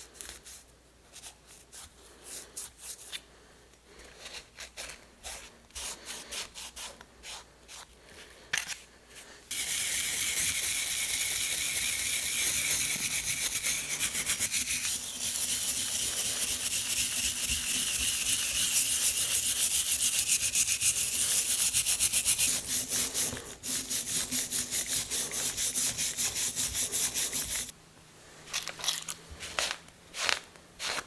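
A rag rubbing over a copper sledge hammer head in short, quiet strokes. About a third of the way in, a much louder continuous scrubbing noise with a steady low hum takes over as the head is worked with a brush. Near the end it drops back to quiet rag strokes.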